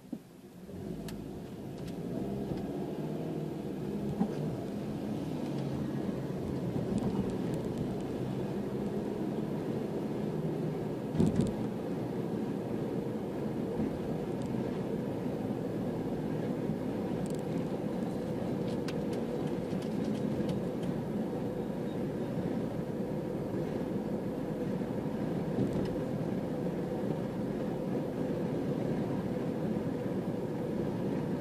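Car engine and tyre noise heard from inside the cabin as the car pulls away from a stop and builds speed over the first few seconds, then settles into steady cruising road noise. A single thump about eleven seconds in.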